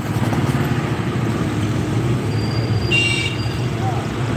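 Car cabin noise while driving: a steady low rumble of engine and road. A brief high-pitched tone sounds about three seconds in.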